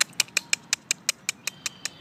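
A person clicking her tongue in a quick, even series of sharp clicks, about six a second, to call an eastern gray squirrel that comes up expecting food.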